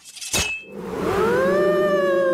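A sharp metallic clink with a short high ring as the cartoon scythe strikes. About a second in, a long ghostly wail from the mushroom's spirit rises in pitch, then slowly sinks.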